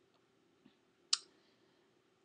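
A single short, sharp click a little past halfway, with a much fainter tick shortly before it.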